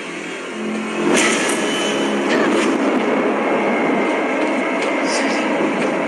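A dense, steady rumbling noise swells up about a second in and holds, with a few brief hissing streaks on top: an eerie sound-design drone.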